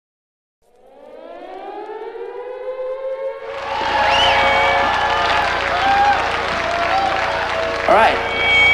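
An air-raid-style siren winds up, fading in and slowly rising in pitch. It then holds a steady tone. From about three and a half seconds in, a loud noisy wash with voices joins it.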